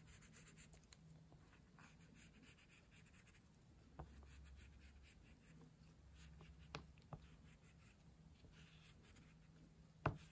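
Very faint scratching of an oil pastel stick rubbed across paper in shading strokes, with a few soft ticks.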